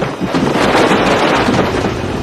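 Stacked cardboard toy boxes crashing and tumbling as a man falls into the display: a loud, dense clatter with a heavy rumble under it.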